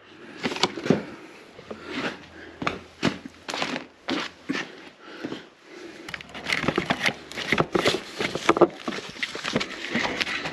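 Irregular clicks, scrapes and rattles of a screwdriver prying at a plastic push rivet on a Jeep's underbody splash shield, the handling getting busier in the last few seconds.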